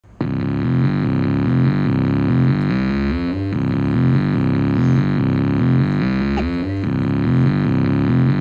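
Music from a portable scratch turntable: a buzzy synth-bass riff that starts abruptly and repeats about every three seconds, each pass ending in a rising pitch glide.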